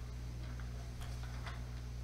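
Steady low electrical hum, with a few faint short clicks about half a second apart.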